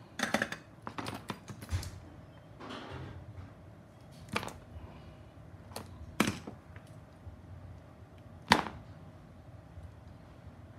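Small clicks and taps of tools, parts and test leads being handled on a workbench: a quick cluster in the first two seconds, then single sharp clicks every second or two, the loudest near the end.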